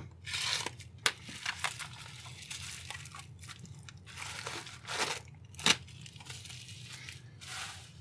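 A padded plastic bubble mailer being slit with a hobby knife and pulled open by hand, with tearing and crinkling in bursts. Two sharp clicks stand out, about a second in and again just before six seconds.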